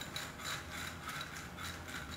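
Gritty scraping as a juniper's root ball and its granular soil are pressed and worked down into a small unglazed clay bonsai pot, in a quick run of about seven short rasps.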